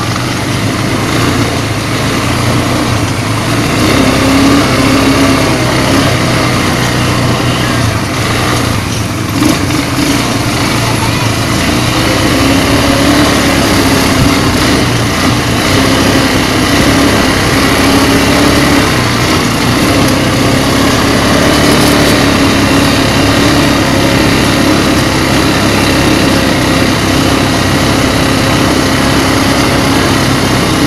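ATV (quad bike) engines running steadily as the bikes are ridden along a dirt track, a continuous motor hum with rushing noise over it.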